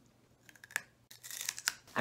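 Mouth sounds of biting into and chewing a dried-out cherry tomato: a few sharp clicks about half a second in, then irregular chewing sounds.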